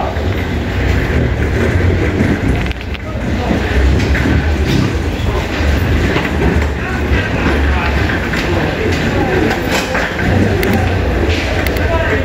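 Passengers' voices and movement in an airport jet bridge over a steady low rumble, with a wheeled carry-on suitcase rolling along the floor and a few sharp clicks toward the end.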